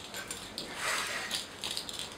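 Mechanical clicking and rattling from a door's lock or latch, with a louder rustle about a second in.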